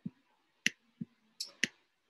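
Stylus pen tapping and clicking on a laptop screen during handwriting, about two clicks a second, alternating dull low taps and sharper high clicks.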